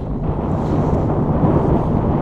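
Wind buffeting the microphone: a steady low rumble with a hiss above it.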